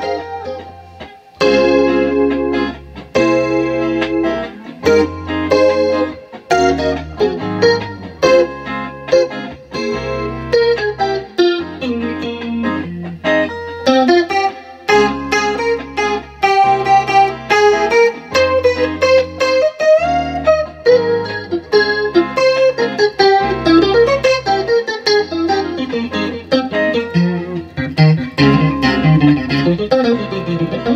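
Electric guitar played through a Dimension C chorus effect, picking a melody with slides over a backing track of seventh-chord changes with a steady repeating bass pattern.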